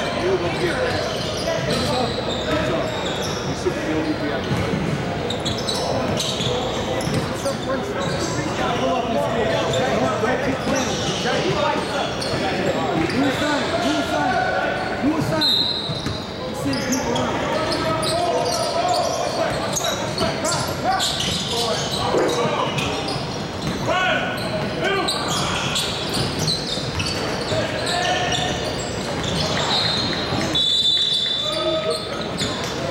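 Basketball bouncing on a hardwood gym floor during play, with players' voices and chatter echoing in a large hall.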